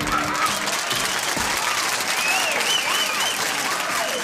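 Studio audience applauding as the band's music stops, with a few voices whooping over the clapping.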